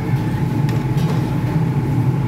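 A steady, loud mechanical drone of kitchen equipment running, with a faint steady whine above it and a couple of faint light clicks.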